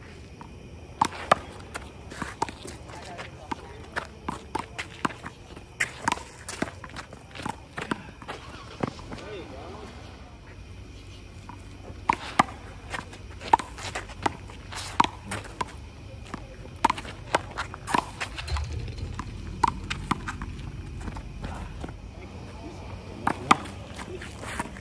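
One-wall handball rally: a rubber handball slapped by hand and smacking off the concrete wall and court, sharp slaps coming in quick clusters with gaps between points, along with sneaker footsteps on concrete.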